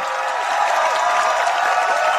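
Studio audience applauding, a dense steady wash of clapping with cheering voices mixed in.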